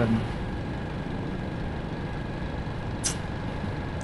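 Steady road traffic noise, with one short high hiss about three seconds in.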